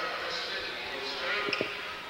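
Gym crowd chatter with a basketball bouncing on the hardwood court, two quick strikes about a second and a half in.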